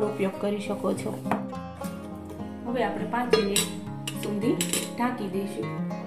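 A steel spoon stirring and scraping thick batter in a stainless steel bowl, with sharp clinks of metal on metal, over background music.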